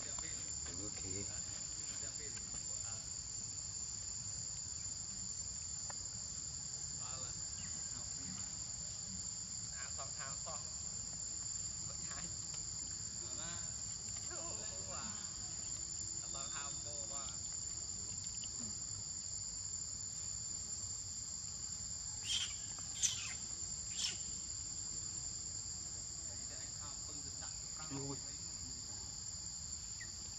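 Steady high-pitched drone of an insect chorus in forest undergrowth, unbroken throughout. Three short sharp clicks stand out about three-quarters of the way through.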